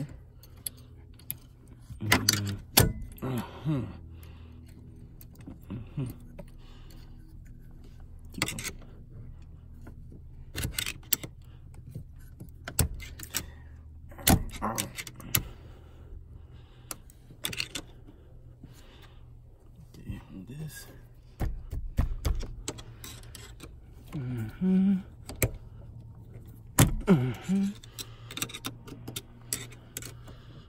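Hand tools clinking on the steering-lock housing and shaft of a BMW E39 steering column: a screwdriver and a wrench work on the shaft and its retaining ring, making irregular metallic clicks, taps and scrapes.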